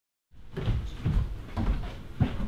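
A run of dull thumps and knocks, about two a second, starting after a moment of silence.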